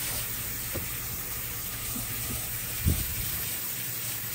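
Steady hissing background noise with a low hum under it, and a soft low thump about three seconds in.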